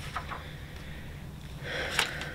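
Quiet room tone with a steady low hum and a few faint clicks, then a short soft hiss near the end, from paper pages being handled.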